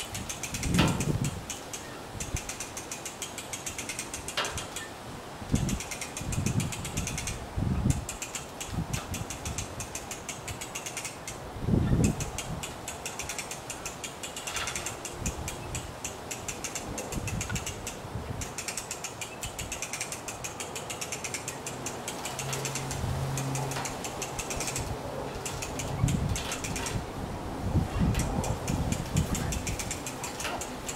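A ratchet clicking rapidly and steadily as the tilt-up tower of a homemade wind turbine is raised, with a few dull knocks along the way.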